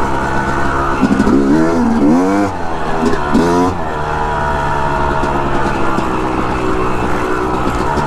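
Yamaha YZ250 two-stroke dirt bike engine running under throttle while riding, its revs rising and falling, with two quick rev swings about two and three and a half seconds in.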